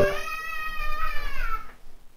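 A domestic cat meowing once: one long, drawn-out meow that rises slightly and falls away, ending shortly before the end.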